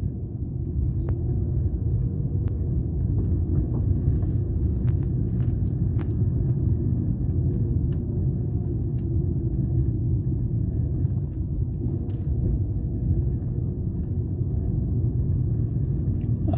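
Car driving slowly, heard from inside the cabin: a steady low rumble of engine and road noise, with a few faint clicks.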